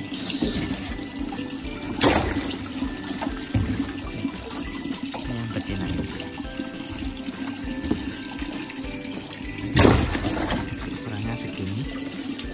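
Water running and splashing in a fish tank and tub as a large red tilapia is handled with a net. Two sharp, louder splashes come about two seconds in and again near the end.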